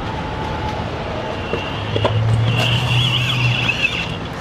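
City street traffic: a motor vehicle running, with a low steady hum that comes up about two seconds in and fades just before the end, and a thin high whine over the second half.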